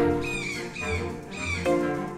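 Children's background music with a short, high animal call repeated four times, each a quick falling note, about two a second.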